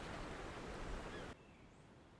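Faint steady rush of outdoor ambience that cuts off suddenly a little over a second in. Near silence follows, with a couple of faint, short, high bird chirps.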